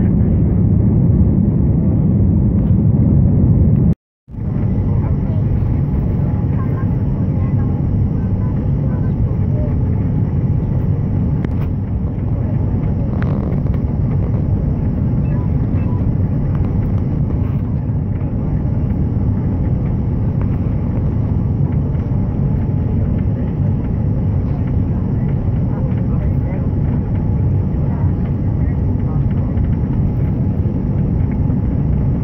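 Steady low rumble of an airliner cabin in flight on approach: engine and airflow noise. The sound drops out for a moment about four seconds in, then resumes.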